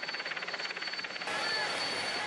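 Steady motor noise from the race vehicles around a breakaway of cyclists, with a fine, rapid pulsing and a thin steady high whine; the hiss grows louder about a second in.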